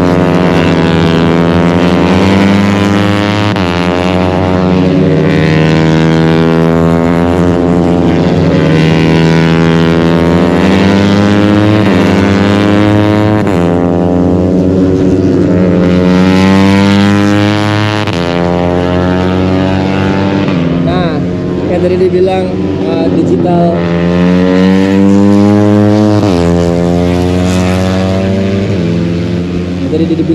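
Racing motorcycle engines at high revs, accelerating through a corner, passing one after another. The pitch climbs and drops sharply at each upshift, over and over.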